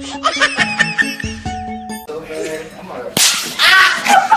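Edited meme soundtrack: music with squeaky sound effects, then about three seconds in a sudden, very loud explosion sound effect with laughter over it.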